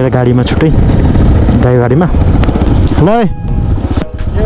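Motorcycle ridden slowly over a rough stony dirt track, its engine running under a heavy rumble of wind on the helmet-mounted microphone, with short voice-like calls that bend up and down in pitch.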